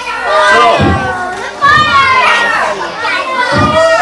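An audience of children calling out and talking over one another, several high voices at once.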